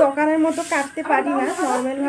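A woman talking, her voice running without a break, over a steady background hiss.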